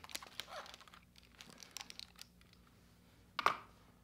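Faint rustling and small clicks of over-ear headphones being handled and pulled on close to the microphone, with one short louder sound about three and a half seconds in.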